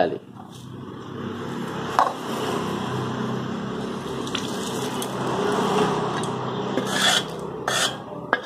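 Heated oil carrying fried seasoning seeds poured from a small steel vessel onto chili-powdered raw mango pieces in a steel bowl, making a steady hiss that builds over several seconds. A couple of metal clinks come near the end.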